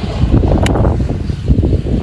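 Wind buffeting the phone's microphone outdoors: a loud, uneven low rumble, with a brief click about two-thirds of a second in.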